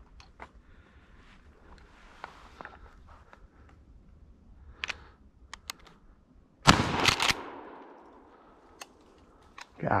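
A single 12-gauge shotgun shot about two-thirds of the way in, the loudest sound by far, its report trailing off over about a second. A few faint clicks come just before it.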